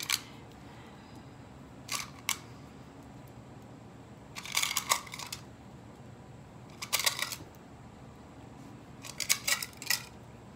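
Bead bars clicking and rattling as they are lifted out of a metal tin and set down, in short bursts of clicks every two to three seconds.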